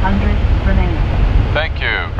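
Steady deep rumble in the cockpit of a Boeing 777 freighter rolling out on the runway after touchdown, with crew voices over it near the end.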